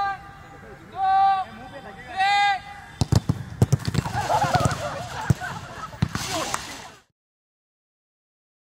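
A man's voice gives three drawn-out shouted calls. Then comes a rapid run of footballs being struck and thudding, amid several players shouting at once. It all cuts off abruptly about seven seconds in.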